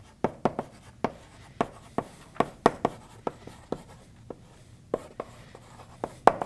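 Chalk writing on a blackboard: a quick string of sharp chalk taps and short strokes, several a second, with a brief lull about four seconds in.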